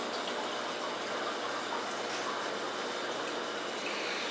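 Steady rush of moving water from aquarium filtration, an even hiss that does not change.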